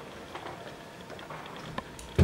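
Quiet room tone in a small lecture room, with a few faint ticks and one sharper click near the end.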